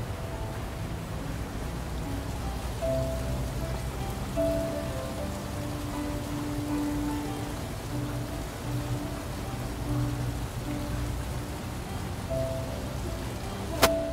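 Soft background music of long held notes that shift slowly from chord to chord, over a steady rain-like hiss of water. A sharp click comes right at the end.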